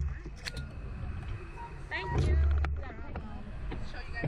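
Clicks and clunks of the Slingshot ride's seat restraints being unbuckled and the shoulder harnesses swung up. A loud low rumble comes a couple of seconds in.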